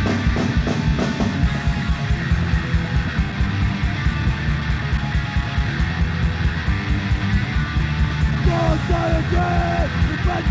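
Hardcore punk band playing fast and loud on a live demo-tape recording. Drums, bass and distorted electric guitar crash in together right at the start and drive on at a rapid steady beat, with high bending notes coming in near the end.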